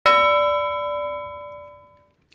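A single bell-like chime struck once, ringing with several clear tones and fading away over about two seconds.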